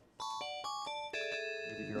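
A short electronic chime jingle: a quick run of bright synthesized notes, then a longer held chord near the end.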